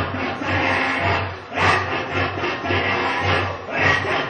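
Live band music with brass instruments in a dense, loud mix over a low pulse about twice a second.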